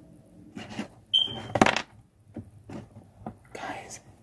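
Handling of a cardboard photo package and its cards: a few light taps and rustles, with one loud sudden sound about one and a half seconds in.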